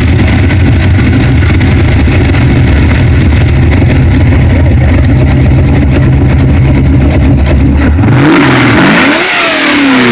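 ZZ4 350 small-block Chevy V8 with AFR aluminum heads and a big cam, breathing through headers and Flowmaster mufflers, idling steadily just after a cold start. About eight seconds in it is revved once, the pitch rising and then falling back to idle.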